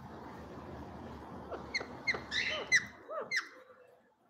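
Indian ringneck parakeet giving a quick run of about six short, high squeaky chirps, each falling in pitch, starting about halfway in.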